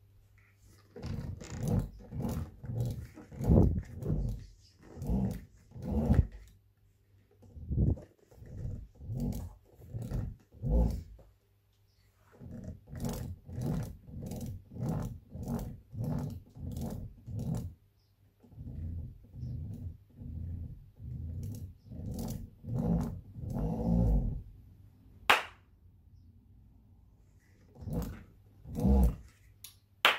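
Fisher & Paykel SmartDrive washing-machine motor being spun with its phase wires twisted together, giving a rapid string of short growling buzzes, about two a second, in several runs with brief pauses; the shorted windings are braking the rotor. A sharp click about 25 seconds in.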